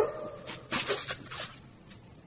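Faint, short breaths from a man, two or three puffs about a second in, after the echo of his voice dies away.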